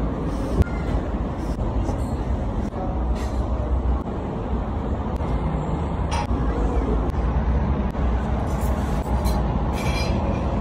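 Steady low rumble of outdoor background noise, with a few faint clicks scattered through it.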